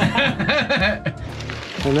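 Two men laughing over steady background music, with a spoken word near the end.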